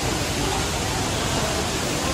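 Steady rushing hiss of splashing water from a plaza fountain.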